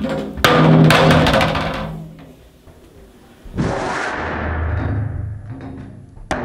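Methanol-fuelled bottle rocket igniting with a loud, deep whoosh that fades over about a second and a half. About three and a half seconds in, the same whoosh comes again, slowed down, lower and longer.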